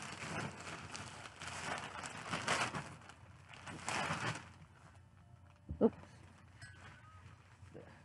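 Rustling and crinkling of a hoodie being handled and unfolding, in a run of uneven bursts that stops after about four and a half seconds.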